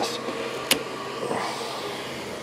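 A 3D-printed calibration cube is pulled off an Ender 3 printer bed, with one sharp click about two-thirds of a second in. The printer's cooling fans keep up a steady hum throughout.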